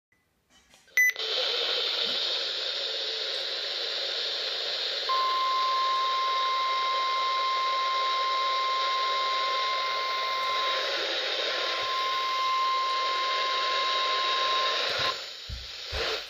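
NOAA Weather Radio alert coming through a small handheld radio's speaker: static hiss begins with a click about a second in. Some four seconds later the warning alarm tone, one steady high beep, sounds over the hiss for about ten seconds and stops near the end. The tone is the signal that a warning broadcast follows.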